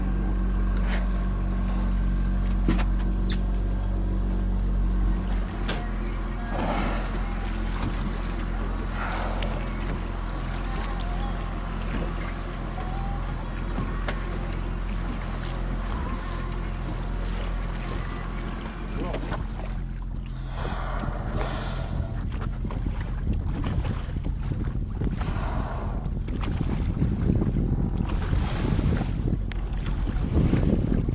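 Boat engine running steadily with a low hum, strongest in the first few seconds, under wind and water noise that grows near the end.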